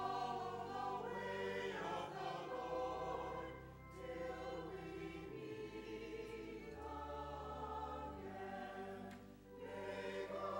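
Church choir singing together in parts over steady, sustained low bass notes. The sound dips briefly between phrases a little before four seconds in and again near the end.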